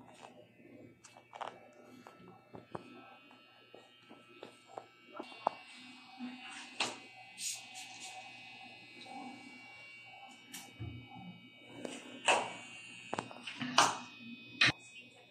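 Quiet room with scattered light clicks and taps, under faint background music and distant voices.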